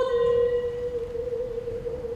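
Solo female voice singing unaccompanied, holding one long note that sags slightly in pitch about a second in and slowly fades.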